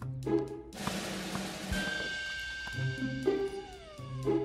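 Cartoon background music with a short rushing sound effect about a second in, then a held high note and falling gliding tones near the end.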